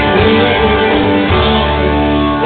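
Live rock band playing an instrumental passage led by guitars, with bass and drums underneath, loud and steady.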